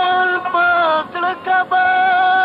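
A solo voice singing Pashto ghazal verse in long, held high notes, broken by short pauses between phrases.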